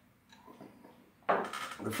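A near-quiet pause with a few faint clicks as a man sips from a glass, then a man's voice starts speaking about a second and a half in.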